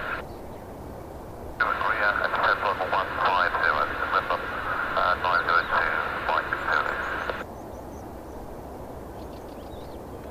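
Air traffic control radio transmission: a voice through a narrow, tinny radio channel, starting about one and a half seconds in and cutting off about two and a half seconds before the end, over a faint steady low background noise.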